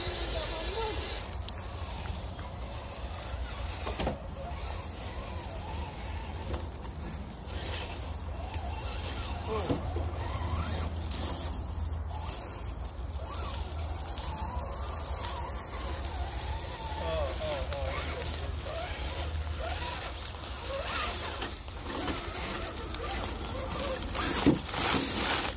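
Electric drive motors of RC rock crawlers, a Redcat Gen8 Scout II and a Danchee RidgeRock, whining as they crawl over rocks, the pitch rising and falling with the throttle. Scattered clicks and scrapes of tyres on rock and leaf litter come through.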